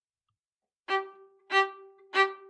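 A fiddle starts a reel in G after about a second of silence. It plays two sharply bowed strokes on the same note, about half a second apart.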